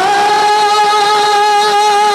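A man singing a naat, holding one long, steady note on a vowel through a microphone and PA, with no instruments beneath it.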